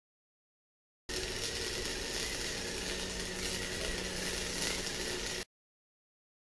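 A machine running steadily, a dense noisy whir with a faint hum. It cuts in abruptly about a second in and cuts off just as suddenly before the end.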